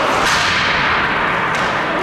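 Ice hockey play: a steady wash of skate blades on the ice and arena noise, with two sharp cracks, one about a quarter second in and one near the end, typical of a stick striking the puck or the boards.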